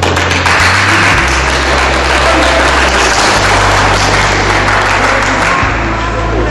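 An audience applauding, dying down near the end, over background music with low, sustained bass notes.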